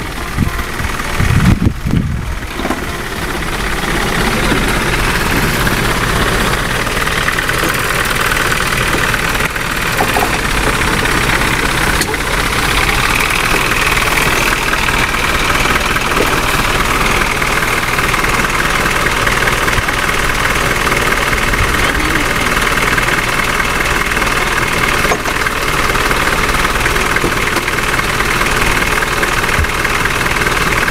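Daihatsu Taft 4x4's engine idling steadily close by. A few loud low thumps come in the first two seconds.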